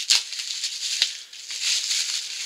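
Handling sounds: a glass nail polish bottle rattling and clicking as it is picked up, with a rustling of packaging near the end.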